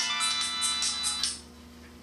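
Mobile phone ringtone playing a musical tune with a quick beat, about four beats a second. It cuts off suddenly about a second and a half in as the flip phone is answered.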